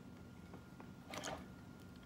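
Faint handling noise: a few light clicks and a brief scrape about a second in, as a leak light is slid into a flute's foot joint and the joint is handled. A low steady hum sits underneath.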